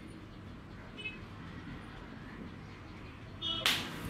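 Quiet room background, with a faint short high chirp about a second in and a brief louder burst with high tones near the end.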